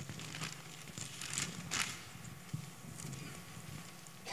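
Thin Bible pages being turned by hand: a few short paper rustles, the loudest just before the middle, over a low steady room hum.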